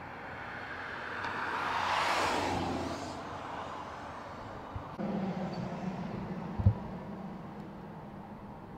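A motor vehicle passing by, its noise swelling to a peak about two seconds in and fading away. About five seconds in a low steady engine hum starts, and a second and a half later there is a sharp, loud thump.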